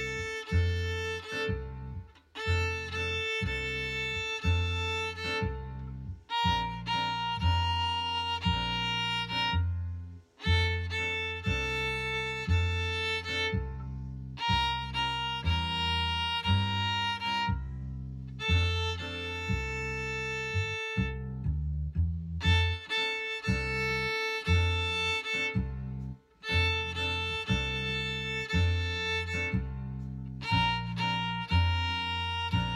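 Violin bowing a simple beginner's melody in long held notes, with short lifts between phrases. It plays over a recorded backing track with a steady bass beat.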